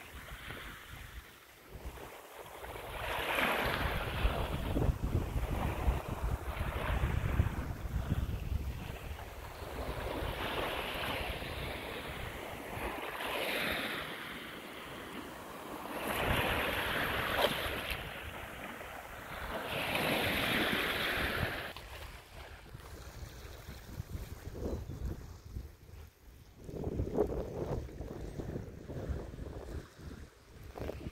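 Small waves washing onto a shingle beach, the hiss of the surf rising and falling every few seconds. Wind buffets the microphone with a low rumble.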